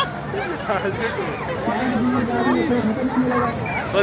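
Overlapping chatter of children's voices, with no clear words.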